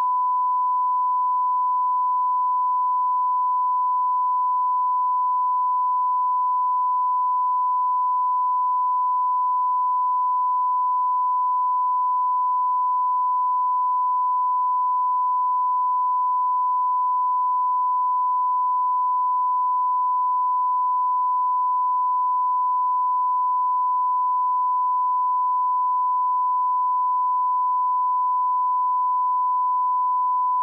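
Broadcast 1 kHz line-up test tone sent with colour bars: a single steady tone at constant loudness, the test signal of a feed that is not yet on air.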